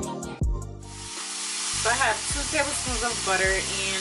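Steady frying sizzle from a hot cast-iron skillet, starting suddenly about a second in, as sliced zucchini and onion go into the pan. Background music with singing plays throughout.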